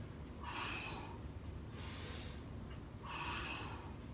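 An elderly man breathing hard with the effort of push-ups: three loud breaths, one about every second and a half, in time with the repetitions.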